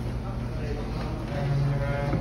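A steady low hum, with a low, drawn-out voice-like tone in the second half.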